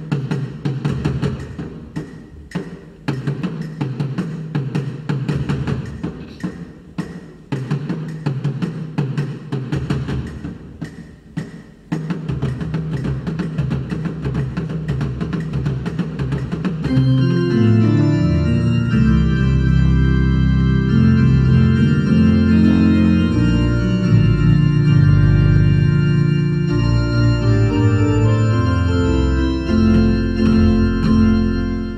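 Traditional Ghanaian drums, a tall wooden drum and a pair of small drums, struck with sticks in a rhythm of sharp strokes. A little past halfway, louder sustained chords come in and carry on over the drumming.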